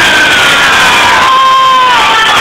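Concert crowd cheering and shouting, with a voice holding one long note that slides down near the end.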